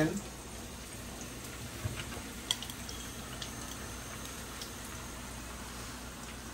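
Sweet potato fries sizzling gently in shallow oil in a pan as they are laid in, a steady soft frying hiss with a couple of light clicks about two seconds in.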